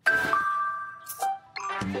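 A bright bell-like chime rings out suddenly, its tones holding and fading over about a second. A second, lower ding follows just after a second in, and then jingly music with several notes takes over near the end.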